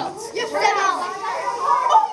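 Children's voices talking and calling out over one another, indistinct chatter in a classroom.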